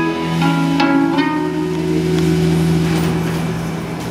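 Live rock band closing a song: electric guitar picks a few last notes in the first second or so, then the final chord is held and rings out, slowly fading.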